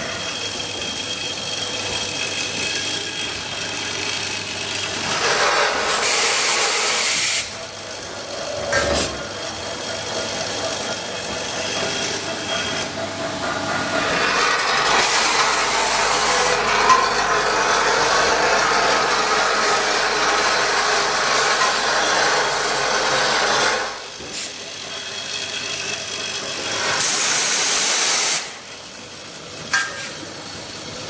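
Automatic pipe chamfering, drilling and tapping machine running: its vibratory bowl feeder gives a steady buzz while steel pipe blanks rattle along the feeder track. Loud bursts of hissing machine noise come in about six seconds in, through a long stretch in the middle, and again near the end.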